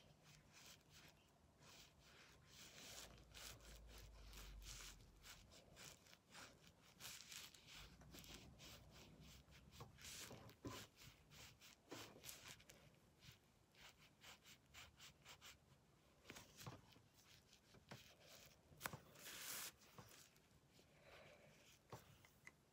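Faint, quick scratching strokes of a felt-tip marker on paper, colouring in.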